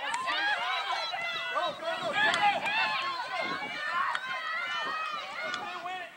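Several high, excited voices shouting and cheering over one another from players and spectators at a soccer match, with no single clear words.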